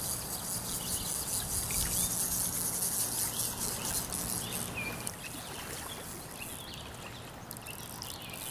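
Steady rush of flowing stream water, with a few faint bird chirps over it. The hiss eases a little after the middle.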